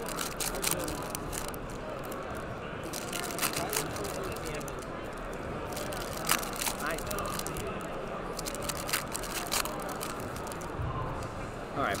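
Foil trading-card pack wrappers (Panini Mosaic) crinkling and crackling in short sharp bursts as the packs are handled and opened, over a steady murmur of background crowd chatter.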